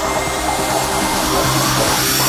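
Trance track in a build-up: a rushing white-noise sweep rises in pitch over the music.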